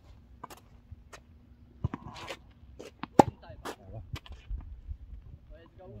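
Footsteps in sneakers on an asphalt court, with scattered sharp knocks, the loudest a little over three seconds in, and a short scrape around two seconds in.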